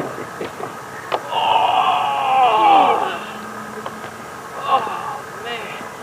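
Indistinct voices talking at a distance, with two short clicks, one at the start and one about a second in.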